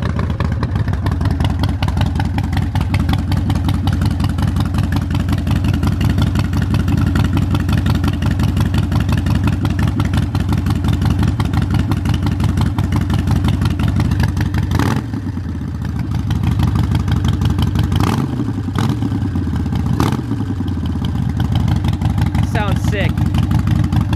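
Harley-Davidson Sportster Iron 1200's air-cooled 1200 cc V-twin, with Vance & Hines Shortshots Staggered exhaust and a high-flow air intake, idling steadily just after starting. It is revved about four times, between about fifteen and twenty seconds in, each rev falling back to idle, and the intake can be heard sucking in air on the revs.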